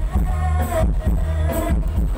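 Loud music with heavy bass, a drum beat and a singing voice, played through the big speaker system of a Thai rot hae sound truck.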